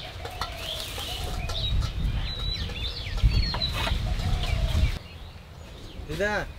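Chickens clucking in short calls, with small birds chirping, over a low rumble that stops about five seconds in.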